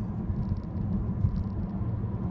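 Steady low road and drivetrain rumble of a Chevy Volt on the move, heard inside its cabin.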